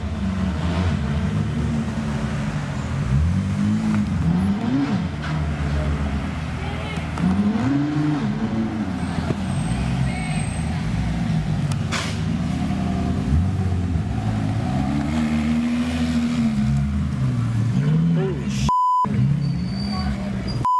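Car engines running and revving in repeated rising and falling sweeps, with a steady censor bleep tone near the end.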